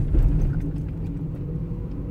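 A car driving along at low speed: a steady low rumble of engine and tyres.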